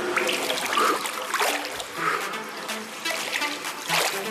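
Pool water splashing and sloshing irregularly as a person moves through it doing aqua-aerobics kicks and arm sweeps.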